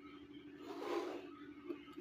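A short, soft scrape of drafting tools on paper about a second in, from a pencil line being drawn along a set square or the set square sliding. A faint steady hum lies underneath.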